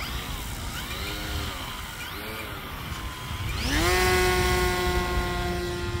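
Electric motor and propeller of an E-flite Carbon-Z Yak 54 radio-control plane. The pitch wavers at low throttle for the first few seconds, then climbs sharply about three and a half seconds in to a steady, louder whine at takeoff power.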